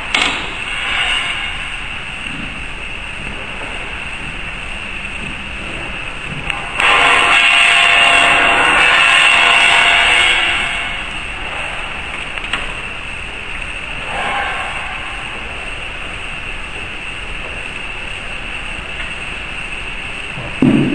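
Steady workshop machine noise, with a few light metal clicks near the start as tooling is fitted into a rotary tablet press. About seven seconds in, a louder machine noise runs for about four seconds, then drops back.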